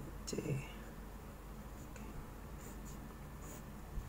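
Pen writing on paper: a few short, faint scratching strokes as symbols and lines are drawn.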